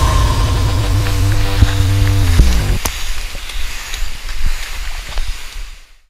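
The closing bars of a pop-rock backing track: a held chord that slides down in pitch about two and a half seconds in, then a fading hiss with scattered clicks that dies away to silence at the end.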